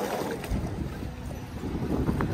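Wind buffeting the microphone over water lapping against a floating dock, with a small motorboat going past close by.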